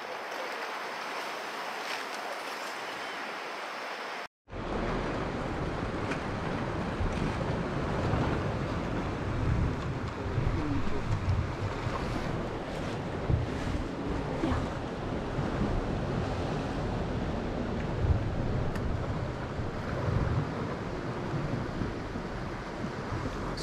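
Wind buffeting the microphone over the wash of sea waves on a rocky shore. After a brief dropout about four seconds in, the low wind rumble is louder and comes in uneven gusts.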